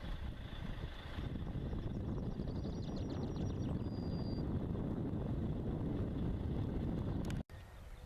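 Wind buffeting the camera microphone: a steady low rumble that drops out suddenly for a moment near the end.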